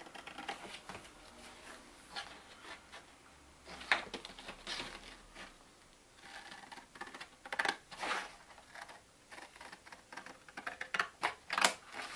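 Scissors snipping through a sheet of paper in short, irregular cuts, with the paper rustling as it is turned; the sharpest snips come about four seconds in and near the end.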